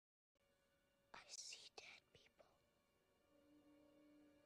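A boy whispering one short, faint phrase, the line "I see dead people", breathy and hissy with no voiced tone. A faint steady low tone comes in about three seconds in.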